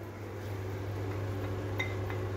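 Chopped tomatoes pushed with a spatula from a plastic strainer into a lightweight stainless steel pot, with one light tap near the end, over a steady low hum.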